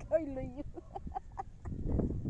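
Women laughing: one drawn-out, bending vocal note, then a run of short, quick laughs.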